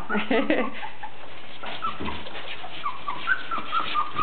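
Brown standard poodle puppies whining in a string of short, high-pitched squeaks, starting about one and a half seconds in, as the hungry litter scrambles toward their mother to nurse.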